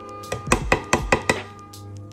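A quick run of about seven sharp knocks within a second as a clear plastic container is shaken and handled, over steady background music.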